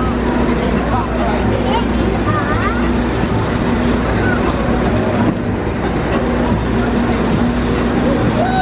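Steady low drone of a bus engine idling close by, amid street traffic.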